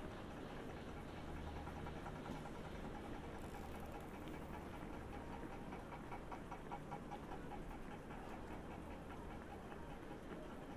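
City street ambience: a steady mix of distant traffic and passers-by with a low hum underneath, and a short run of quick, even ticks in the middle.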